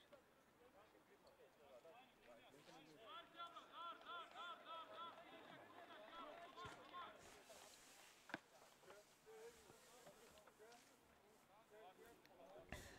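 Faint field sound with distant shouted calls from rugby players, a run of quick repeated calls in the middle, and a single sharp click about eight seconds in.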